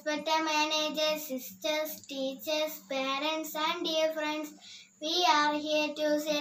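A young girl singing, in held, wavering notes broken into short phrases, over a faint steady hum.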